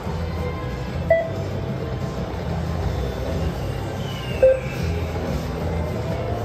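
Goblin's Gold video slot machine playing its game music and spin sound effects, with a short bright chime about a second in and another about four and a half seconds in, and a falling tone just after four seconds. A steady low rumble of casino-floor noise runs underneath.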